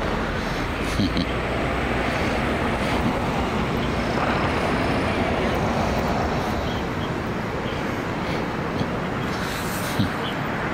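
Steady background noise with indistinct voices mixed in.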